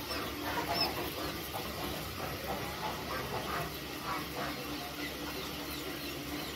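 A brood of quail chicks peeping continuously, many short, high cheeps overlapping.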